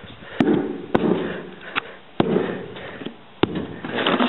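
A screwdriver jabbed repeatedly into the rotted plywood floorboard of a pontoon boat: about five sharp knocks and cracks, with scraping in between. The wood is rotten and soft enough for the screwdriver to push through.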